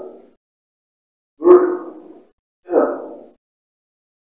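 Taekwondo kihap: a man shouts twice, each shout short and sharp and about a second and a half apart, each one marking a kick.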